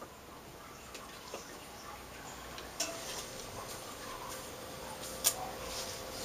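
Quiet scattered clicks and taps of a thin LCD glass panel and its plastic and metal frame being handled and set in place, with one sharper click about five seconds in. A faint steady hum comes in about halfway through.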